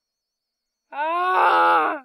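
A person's drawn-out vocal groan starts about a second in. It rises a little in pitch, then holds with a wavering quality for about a second.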